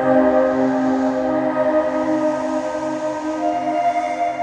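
Ambient electronic music: sustained synthesizer pads holding a chord over a softly pulsing low note, with a new higher tone entering near the end.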